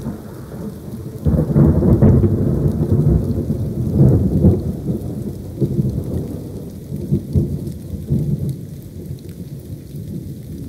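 Thunder rolling over steady rain. The rumble swells about a second in and again around four seconds, then fades toward the end.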